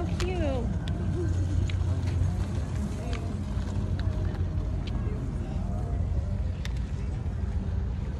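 Busy outdoor ambience: a steady low rumble with people's voices in the background and a few scattered sharp clicks.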